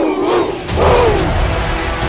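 Football players yelling in a huddle, then a bass-heavy music track comes in under one last falling shout about a second in.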